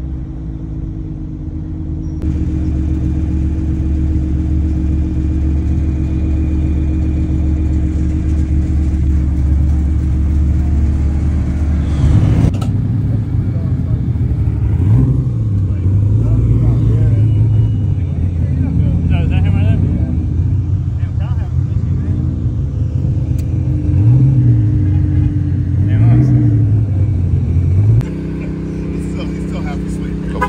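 Car engine droning steadily, heard from inside the cabin while driving; later, car engines running nearby with their pitch rising and falling a few times as they are blipped, before a steady drone returns near the end.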